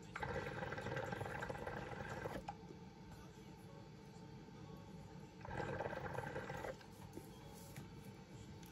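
Hookah water bubbling as smoke is drawn through the hose, first for about two and a half seconds, then again briefly about five and a half seconds in.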